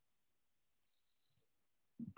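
Near silence on a video-call feed, with only a faint, brief high hiss about a second in: the remote speaker's audio dropping out on an intermittent connection.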